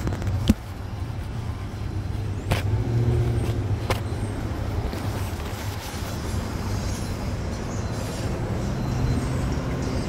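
Steady low hum of a gas station fuel pump dispensing gasoline into a car, with a few sharp clicks and rustles from handling close to the microphone.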